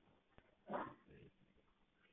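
Near silence, with one brief faint sound a little under a second in.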